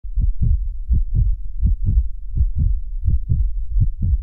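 A heartbeat: a steady lub-dub of paired low thuds at about 80 beats a minute.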